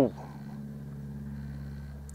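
A steady low hum, with the tail of a man's word right at the start.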